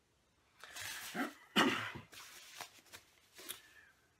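Rustling and scraping as a banjo wrapped in a thin white protective sheet is pulled out of its padded gig bag, the loudest scrape about one and a half seconds in, followed by a few light knocks of handling.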